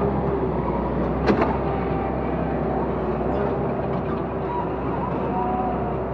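Valmet 911.1 forest harvester working: its diesel engine runs steadily while the crane swings the felling head, with one sharp knock a little over a second in and a faint whine in the second half.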